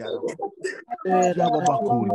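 A man's voice praying in tongues, with a run of short syllables and then one long held vowel in the second half.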